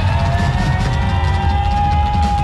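Live pop-rock band playing drums, bass and electric guitars, with a long held note that rises slowly over the rhythm section.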